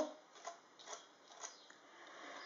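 Faint scraping and a few small ticks of a palette knife spreading texture gel through a card stencil.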